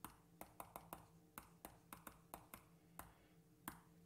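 About a dozen faint, sharp computer clicks at an uneven pace as the sum 2000 × 0.9608 is keyed into a calculator emulator, over a faint steady hum.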